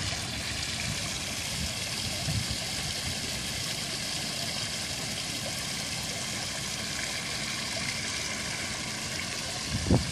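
Tiered fountain's water falling and splashing into its tiled basin, a steady rushing and trickling.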